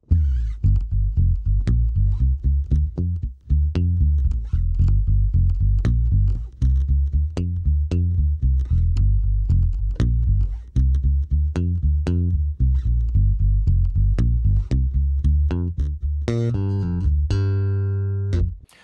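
Electric bass guitar played fingerstyle through a Bergantino Super Pre bass preamp pedal: a busy line of plucked notes with a clean tone, a fat low end and a sparkling top end. Near the end it settles on a long held note.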